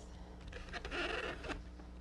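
Flat basket-weaving reed scraping as it is pulled through the woven spokes. The pull lasts about a second, starting about half a second in.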